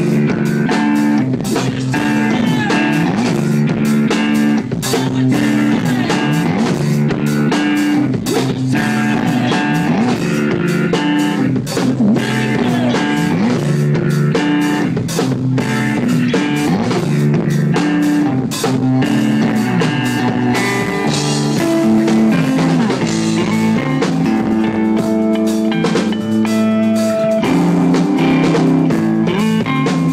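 Live rock band playing an instrumental passage: electric guitar through an amplifier over a drum kit keeping a steady beat.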